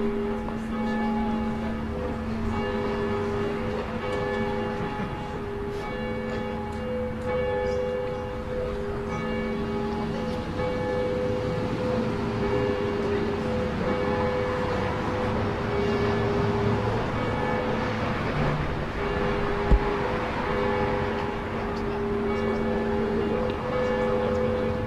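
Cathedral bells ringing, several steady pitched tones overlapping and sustained. A single brief thump about 20 seconds in.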